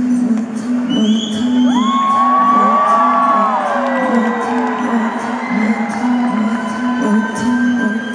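Live band music in a concert hall, with a pulsing bass note and a steady beat, while the crowd cheers and whoops. A high whistle sounds about a second in, and a long held note glides down in pitch through the middle.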